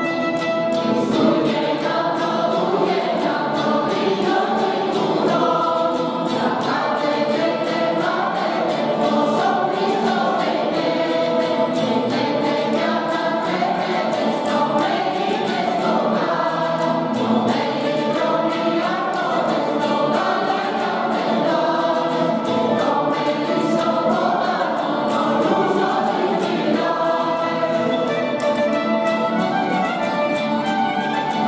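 A mixed choir sings a traditional Greek Christmas carol (kalanta) to an accompaniment of violin and lutes. Near the end the voices stop and the instruments carry on alone.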